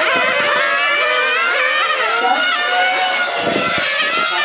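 Several 1/8-scale nitro RC race cars, each powered by a small two-stroke glow engine, running at high revs. Their overlapping high-pitched whines rise and fall as the cars brake and accelerate through the corners.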